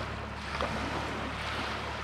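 Steady wind rumble on the microphone over a hiss of wind and small waves lapping at the shore.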